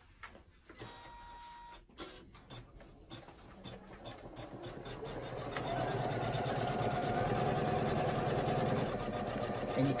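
Janome 550E embroidery machine starting to stitch out lettering on a hooped sweater: quiet at first, it builds up over a few seconds and settles into a steady, fast stitching run from about halfway through.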